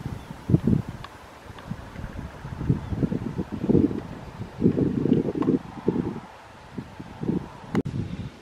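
Wind buffeting the microphone in irregular low rumbling gusts, with a sharp click near the end.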